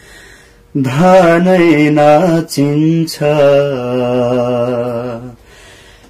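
A man singing unaccompanied in a slow, drawn-out style, holding long notes with a wavering vibrato. He comes in about a second in, breaks briefly twice, sustains a long low note, and stops a little after five seconds.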